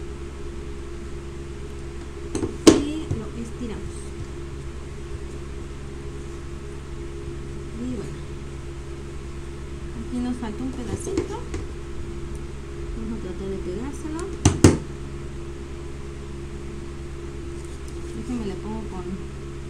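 Steady hum of an electric fan running, with fabric being handled and two sharp knocks on the table, one about two and a half seconds in and another near fourteen and a half seconds.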